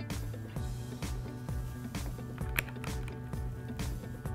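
Background music with a repeating bass line and sustained chords.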